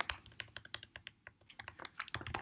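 Typing on a computer keyboard: a quick, irregular run of light keystroke clicks.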